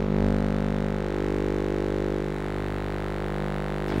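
Microwave oven running with its outer casing removed: a steady electrical buzzing hum from its high-voltage transformer and magnetron.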